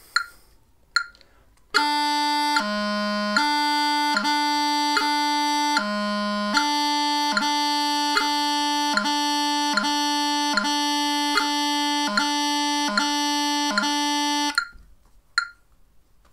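Bagpipe practice chanter playing an exercise on C: a steady held note separated by quick tapping grace notes down to low G, about one tap per beat, with two longer held low G notes early on. A metronome ticks faintly just before the playing starts and after it stops.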